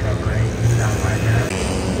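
Small-capacity race motorcycles running at speed on the circuit, heard as a steady engine drone.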